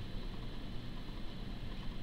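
Steady low rumble and hiss of room background noise, with no distinct events.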